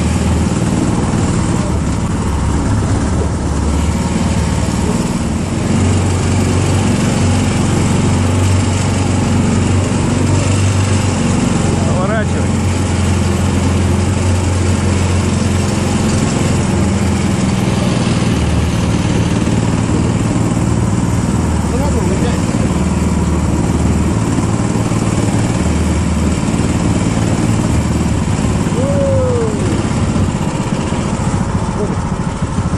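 Engine of a homemade karakat all-terrain vehicle running steadily under load as it drives along a dirt track, its note rising and falling a little.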